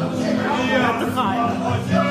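A woman singing into a microphone over a sustained musical accompaniment of long held notes.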